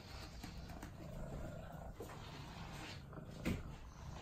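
Domestic cat purring steadily while being brushed, with the soft rasp of brush strokes through its fur and a short click about three and a half seconds in.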